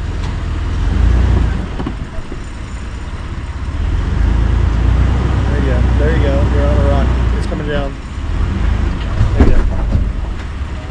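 Mitsubishi Montero's engine running at low crawling speed over rocks, a low rumble that swells about a second in and again from about four to seven and a half seconds, with sharp knocks near the end.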